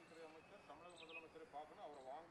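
Only speech: a man talking quietly at the press microphones.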